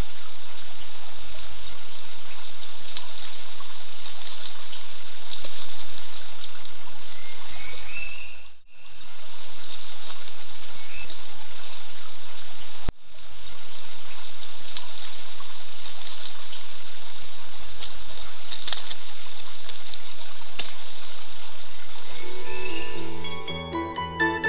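Steady rush of flowing forest-stream water with faint steady high tones over it, dropping out briefly twice. Plucked-string music comes in near the end.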